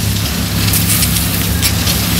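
A rake scraping through dry fallen leaves and rustling them on the ground, over a steady low hum.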